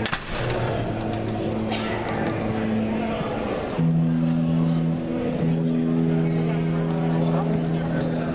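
Live band music playing long held chords, the chord changing about four seconds in, with crowd chatter underneath.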